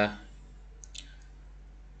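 A drawn-out 'uh' trails off, then a quiet stretch with a steady low hum, broken about a second in by two faint short clicks.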